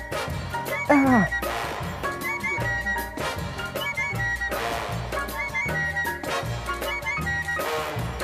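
Upbeat background music with a steady beat and a repeating melodic figure.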